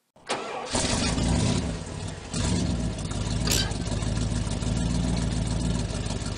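A vehicle engine starts and runs steadily, with a brief dip about two seconds in and a short sharp click about three and a half seconds in.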